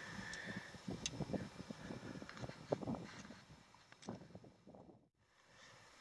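Faint, irregular crunches and knocks of footsteps on loose rock and gravel. They die away about four seconds in, leaving near silence.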